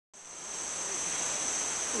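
Tropical rainforest insects calling in a steady chorus, one continuous high-pitched drone.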